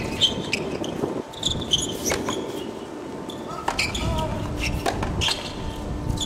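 Tennis ball bouncing a few times on a hard court as a player gets ready to serve, with short high chirps in the background.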